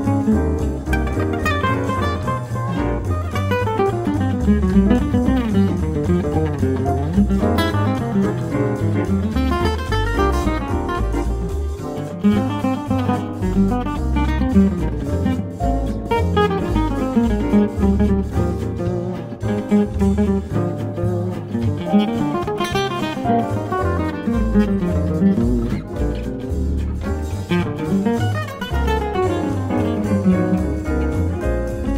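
Instrumental 1930s-style swing jazz playing continuously, with moving melodic runs over a steady bass line.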